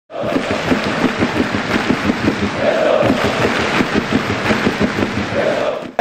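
A large crowd cheering and chanting loudly, a dense roar of many voices with swells.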